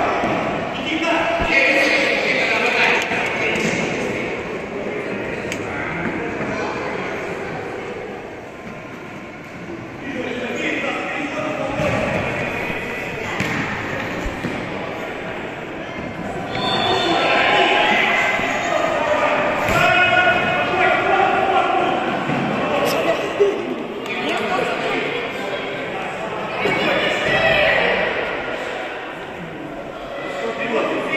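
A futsal ball being kicked and bouncing on a hard sports-hall floor, a scattered series of thuds that echo in the hall. Indistinct shouting voices run through the play, loudest in the second half.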